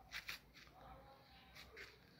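Near silence, with two faint short clicks just after the start and another faint one near the end.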